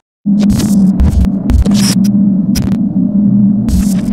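Loud electronic outro sting for a subscribe end card. It starts abruptly after a brief silence as a steady low drone, with several short bursts of hiss and a few deep booms.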